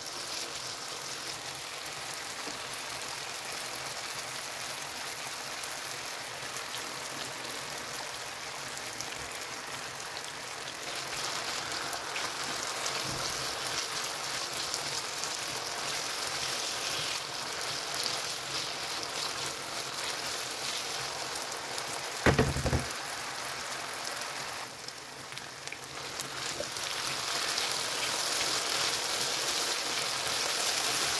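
Diced potatoes frying in oil in a tagine: a steady sizzling hiss with fine crackles, growing louder toward the end. A brief loud thump comes a little over twenty seconds in.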